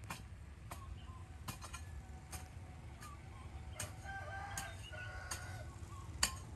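A rooster crowing in the background, one drawn-out crow about four seconds in, with scattered sharp clicks throughout.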